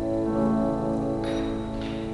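Trombone and piano playing slow classical music, with long held notes that gradually fade. Two brief hissy noises come past the middle.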